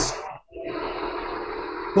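Steady hiss of background noise on a video-call audio line, with no speech. It cuts out completely for a moment about half a second in, then comes back.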